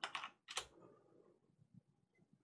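Computer keyboard keys pressed in two quick bursts, the first right at the start and a shorter one about half a second in.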